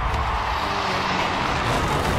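A steady rumbling roar in an animated film's soundtrack, with no clear voice or tune in it.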